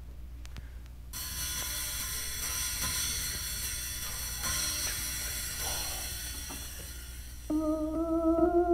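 Lounge organ playing from an old LP: after faint hum and surface clicks, a sustained bright organ chord comes in about a second in, with record crackle ticking through it. Separate organ notes start near the end.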